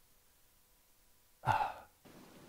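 Near silence, then about one and a half seconds in, a man's single short sigh.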